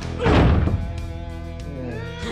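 A loud, heavy fight-scene thud, a body struck or slammed, about a quarter second in, over a film score with held notes.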